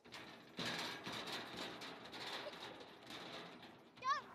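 Outdoor background noise with a pigeon cooing.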